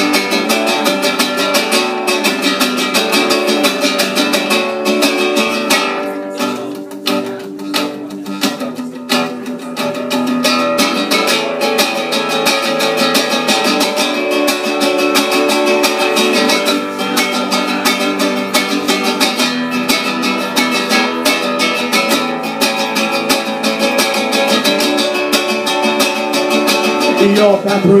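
Solo acoustic guitar strummed in a quick, steady rhythm as a song's instrumental intro, easing off a little about six to nine seconds in before building back up.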